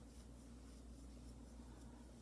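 Near silence with faint, soft scratching of yarn being drawn over a crochet hook as stitches are worked, over a low steady hum.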